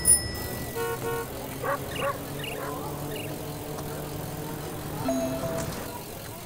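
Sound effects of an animated scene: two short electronic beeps about a second in, then a few brief rising and falling chirps, over a low steady hum.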